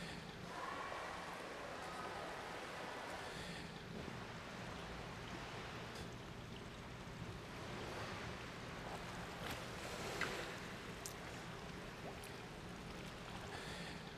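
Faint, steady swimming-pool water noise, with a few faint clicks.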